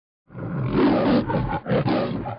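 A loud, rough roar, like a big animal's, starts about a quarter second in and carries on with a couple of brief dips.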